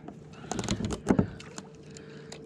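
A few light clicks and knocks of fishing tackle being handled in a kayak while a soft-plastic worm is threaded onto the hook and the rod is picked up, the loudest about a second in.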